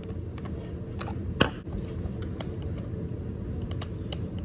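Flat-head screwdriver turning out the handle screw of a Stihl 038 AV chainsaw: scattered small clicks of the blade working in the screw slot, the sharpest about a second and a half in, over a steady low background hum.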